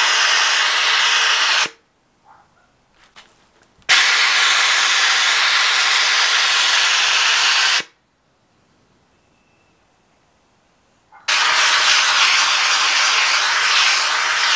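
Handheld McCulloch steam cleaner jetting steam through a cloth-wrapped triangular attachment onto a vinyl decal to soften its adhesive. Steady hissing in three bursts of a few seconds each, cutting off abruptly into near-silent pauses between them.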